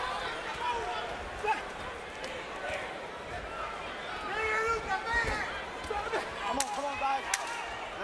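Arena crowd noise at a boxing match, with a boxer grunting as he punches in the exchanges and two sharp smacks of gloves landing near the end.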